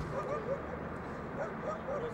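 A dog barking: about six short yaps, in two clusters, over steady background noise.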